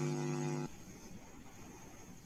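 A man's voice held on a steady, level hum that stops abruptly just under a second in, followed by faint room tone.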